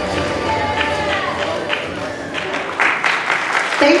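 Posing-routine music stopping a little past halfway, then an audience applauding and cheering.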